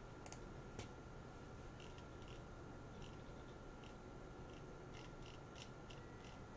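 Faint scattered computer-mouse clicks, about a dozen, over quiet room tone with a thin steady hum.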